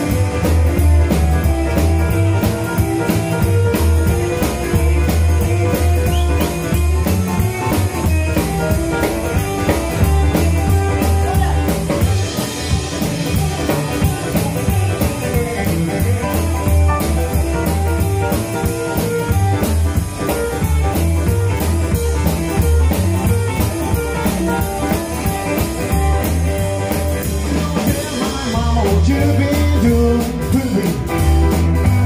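Live rockabilly band playing an instrumental break: hollow-body electric guitar with a Bigsby vibrato, upright bass, drum kit and electric keyboard, with a steady driving bass and drum beat.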